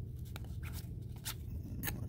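1991 Upper Deck baseball cards being flipped through by hand: a few short, soft scrapes and clicks of card stock sliding off and onto the stack, over a low steady hum.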